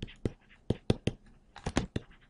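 A stylus clicking and tapping against a tablet's writing surface during handwriting: about eight short, sharp clicks in irregular clusters.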